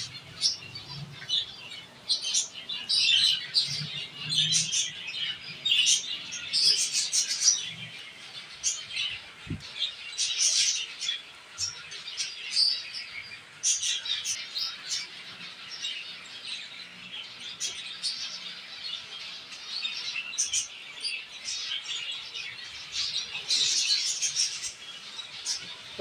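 A colony of zebra finches chirping and calling, many short calls overlapping without a break.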